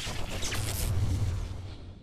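Logo-reveal sound effect: a rushing whoosh over a deep boom that rumbles and then fades away near the end.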